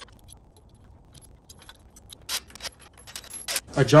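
Light metallic clinking and jingling of loose steel parts as the lower shock mount plate is fitted over the leaf-spring U-bolts, a scatter of sharp clicks in the second half.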